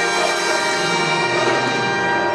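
High school jazz big band playing, the trumpets, trombones and saxophone holding one loud sustained chord.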